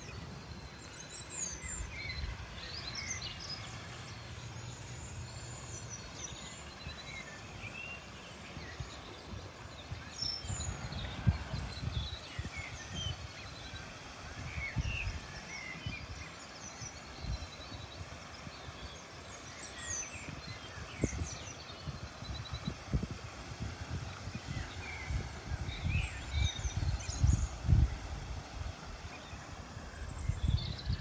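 Small birds chirping and trilling over an outdoor ambience, with irregular low rumbling gusts of wind on the microphone that come and go and are loudest about eleven seconds in and near the end.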